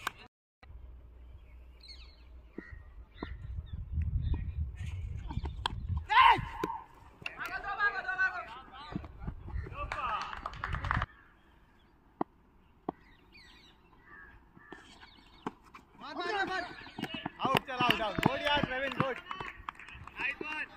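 Voices calling out across an open cricket field, with wind rumbling on the microphone through the first half and a sharp knock about six seconds in.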